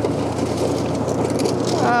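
Soviet T-55 recovery tank's V12 diesel engine running steadily under throttle as the tracked vehicle climbs onto and crushes a small car.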